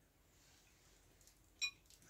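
Quiet room tone, broken about one and a half seconds in by a single short, ringing clink of tableware at a meal.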